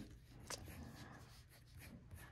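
Faint scratching of a graphite pencil drawing on paper, with a light tick about half a second in.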